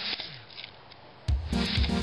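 A cardboard buzz-top on a cotton kite string buzzing faintly as it spins, with a short falling hum. About a second and a quarter in, background music with a steady beat starts and becomes the loudest sound.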